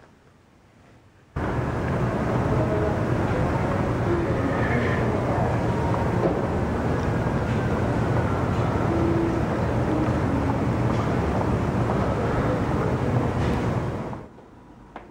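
Loud, steady outdoor rumble and hiss with no clear rhythm or pitch, starting abruptly about a second in and holding level throughout.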